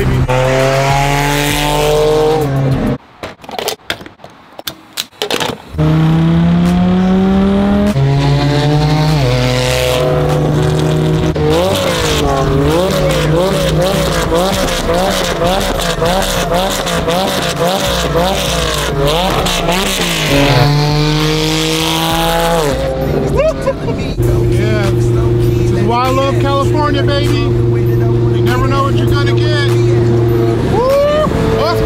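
A supercar's engine accelerating hard through the gears, heard from inside the cabin. Its pitch climbs steeply and falls back at each upshift, several times over. The sound cuts out abruptly for a couple of seconds near the start, and the engine settles into a steady drone near the end.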